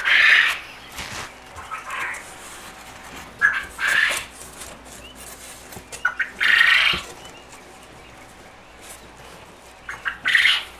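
Rigid foam board insulation squeaking and rubbing as a cut face piece is pushed into a tight fit, in several short bursts of under a second; the loudest come at the start and about six seconds in.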